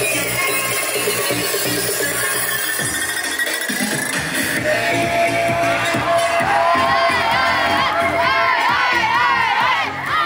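Dance music with a steady, bass-heavy beat. About three seconds in the beat drops away, and a crowd of teenagers starts cheering and shouting, growing louder toward the end while the music carries on underneath.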